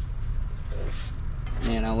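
Chicken and vegetables sizzling in a pan on a portable butane stove as they are stirred, over a steady low rumble. A man's voice starts near the end.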